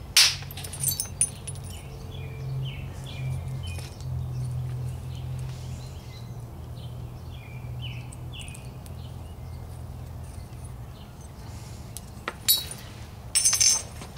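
Quartzite hammerstone striking a chert preform: one sharp stone-on-stone clink at the start as a flake comes off, a few lighter taps just after, then two more strikes near the end.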